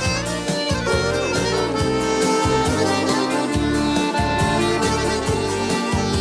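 Instrumental break in a Tatar pop song: a button accordion plays the melody over a steady bass line and beat, with some gliding notes.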